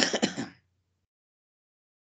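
A person clearing their throat once, a short rough burst of a few quick pulses lasting about half a second right at the start.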